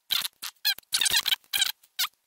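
A rapid run of short, close squeaks and scrapes, about eight in two seconds, from fingers and the phone's motherboard rubbing against its plastic and metal frame as the board is worked into place.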